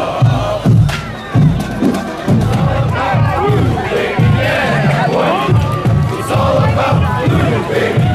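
Marching band members shouting and chanting in unison over a steady drum beat, about one and a half beats a second, while the horns are silent.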